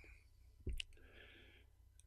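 A man's mouth click, a lip smack, about two-thirds of a second in, followed by a soft breath in during a pause in his speech.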